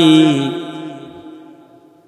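A man's chanted sermon delivery, amplified through microphones, holds the last drawn-out note of a phrase. The note then stops and fades away over about a second and a half in a lingering echo.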